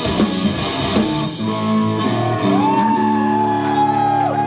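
Live heavy rock band with distorted electric guitars, bass and drums. About a second and a half in the drums stop and held guitar and bass notes ring on, with a high wavering guitar tone taking over in the second half.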